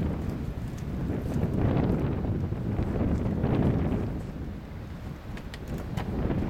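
Wind buffeting the camera's microphone: a low rumbling noise that swells twice, about two seconds in and again around three and a half seconds.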